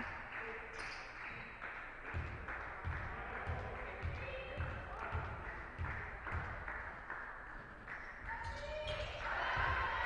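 Basketball bounced on a hardwood court by a player at the free-throw line, a run of dull thumps about two a second in a large hall. Voices rise near the end.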